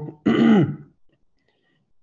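A man clears his throat once, a short rough sound that falls in pitch, about a quarter of a second in.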